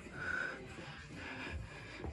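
Faint sounds of a person exercising in a plank: a short breathy exhale about a quarter second in, then a soft low thump near the end as a foot steps out to the side on the floor mat.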